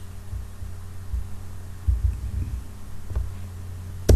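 Steady low electrical hum on the recording, broken by irregular soft low thumps, with a faint click about three seconds in.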